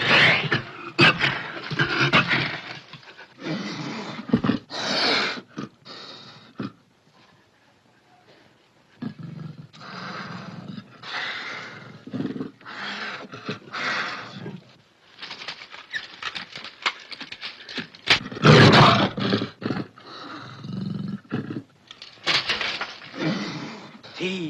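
Black panther snarling and roaring in a string of harsh bursts, with a short lull about seven seconds in and the loudest roar about eighteen seconds in.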